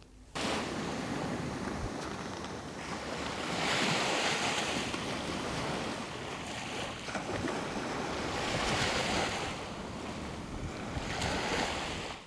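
Sea surf washing onto a sandy beach, with wind, setting in about half a second in and swelling louder about four seconds in and again around nine seconds.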